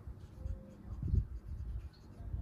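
A pencil writing a few words on planner paper: short, irregular scratching strokes of the lead across the page.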